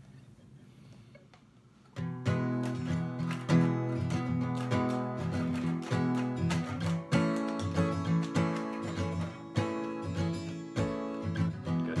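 Steel-string acoustic guitar with a capo, silent for the first two seconds, then strummed chords start suddenly and carry on in a steady rhythm as the song's instrumental intro.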